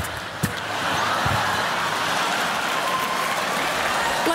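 Theatre audience laughing and applauding in a steady, loud wash of crowd noise.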